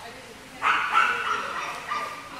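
A dog crying out in high-pitched whines and yips. The first cry starts suddenly about half a second in and runs for about a second, and a shorter one comes near the end.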